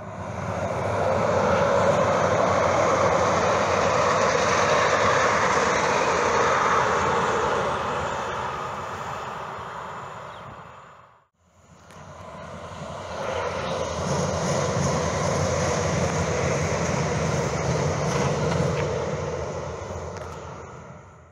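Calgary CTrain light-rail trains passing along the track: a rumbling rush that swells and fades away over about ten seconds. After a brief cut to silence, a second train swells up and passes.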